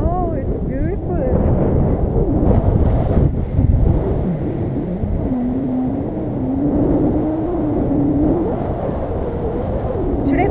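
Wind buffeting the camera's microphone during a tandem paraglider flight: a loud, steady rush with a ragged low rumble. A person's voice sounds briefly at the start and again, wavering, through the middle.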